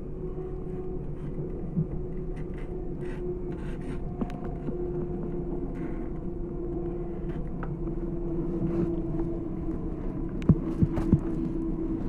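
Steady rumble of a moving S-Bahn commuter train heard from inside the carriage, with a steady hum throughout. Three sharp clicks come close together near the end.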